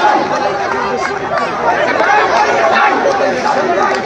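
A crowd of marching protesters, many voices talking and calling out over one another at once.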